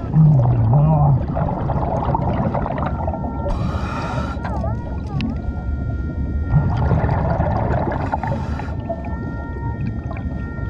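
Underwater sound of a scuba diver's breathing, with regulator exhaust bubbles rushing out in two bursts about four and seven seconds in. There is a low wavering hum at the start, and thin steady electronic tones that dip in pitch twice in the middle and run on near the end, typical of an underwater metal detector sounding over the trash-strewn bottom.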